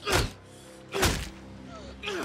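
Two heavy punches about a second apart, a fist striking a face, each with a short grunt, over sustained film-score music.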